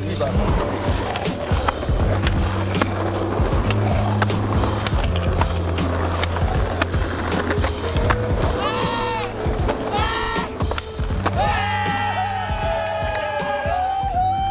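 Skateboards rolling and clacking on paving stones, under a music track with a steady deep bass line. A pitched voice line comes in over it in the second half.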